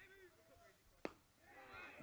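A single sharp pop about a second in: a pitched baseball, a slider, smacking into the catcher's mitt on strike three. Otherwise faint ballpark ambience.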